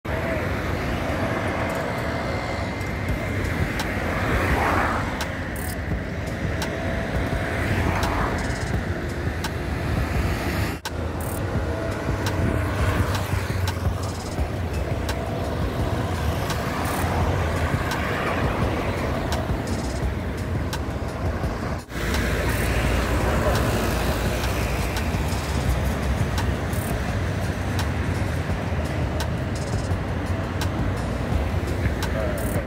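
Road traffic: a steady run of cars and vans driving past, the noise swelling as each one goes by. It cuts out for an instant twice, at about a third and two thirds of the way through.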